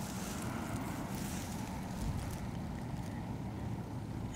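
Steady low rumble of wind buffeting the microphone, with a faint soft bump about two seconds in.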